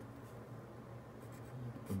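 Pen writing on lined paper.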